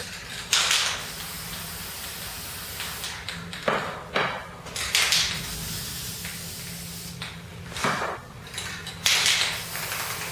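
Aerosol spray-paint can hissing in several short bursts, under a second each, as paint is sprayed onto a refrigerator door.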